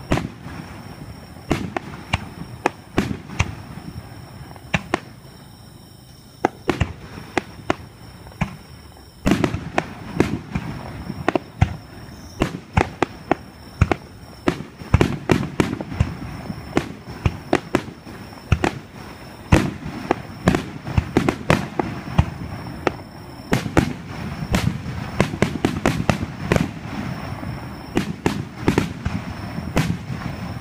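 Aerial fireworks at close range: shells bursting in many sharp reports over a rumbling, crackling background. After a few seconds with sparser bursts, a denser barrage starts about nine seconds in and keeps going.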